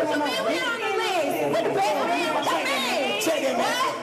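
Several people talking over one another in overlapping chatter.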